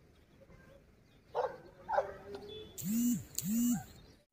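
An animal calling: four short calls over the second half, after a quiet start.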